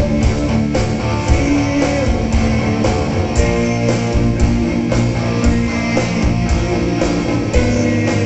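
Heavy metal band playing live: electric guitars over held notes and a steady beat.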